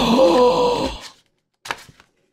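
A man's drawn-out vocal exclamation of admiration, held for about a second, followed after a short silence by a brief gasp.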